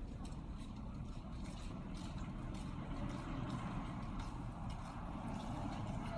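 Outdoor street ambience: a steady low rumble of road traffic, with faint scattered ticks over it.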